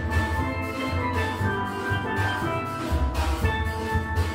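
A steel band of several steel pans playing a tune together, with low bass notes under the ringing melody and a steady rhythm.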